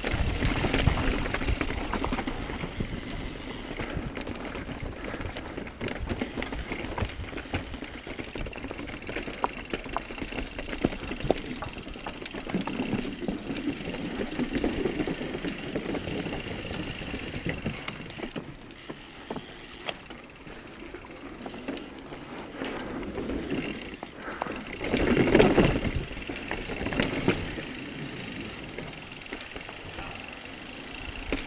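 Mountain bike ridden down a dirt trail: tyres running over dirt and rock, with the chain and frame rattling over the bumps. There is a louder stretch about 25 seconds in.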